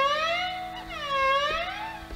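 Hindustani classical violin played with long, unbroken bowed notes whose pitch slides smoothly down and up in slow waves, twice within a couple of seconds, in the voice-like gliding (meend) style.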